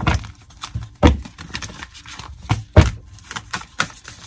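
A deck of oracle cards being shuffled by hand: a run of light card clicks broken by several sharp thumps, the loudest at the start, just after one second and near three seconds.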